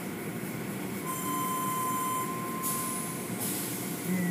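Automatic tunnel car wash running: hanging cloth strips sweeping over a car amid water spray and steady machinery noise. A thin, steady high squeal sounds from about a second in until about three seconds in.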